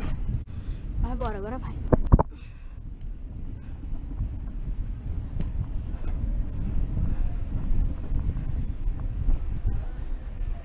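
Bicycle rolling fast along a street: a steady low rumble of wind on the microphone and tyres, with scattered light knocks from the bike. A short voiced cry comes about a second in, and a couple of sharp knocks come around two seconds.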